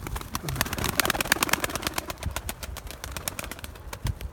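A flock of pigeons pecking and moving about on soil, with wing flaps: a quick, continuous run of small clicks and taps over a low rumble.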